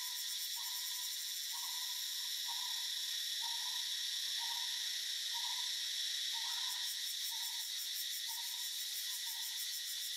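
Steady high-pitched insect chorus with a fine rapid pulse. Over it, a bird gives a short, hoot-like note about once a second.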